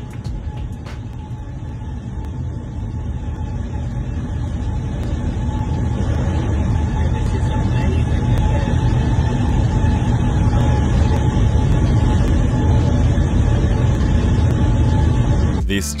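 A jet airliner's turbofan engine running: a deep, steady rumble with a faint steady whine above it, growing louder over the first half and then holding.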